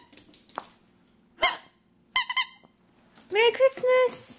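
A dog's plush squirrel squeaky toy squeaking as the dog bites and shakes it: several short, high squeaks, two in quick succession in the middle.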